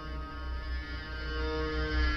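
Dark film score music: a deep low drone under sustained held tones, slowly swelling in loudness.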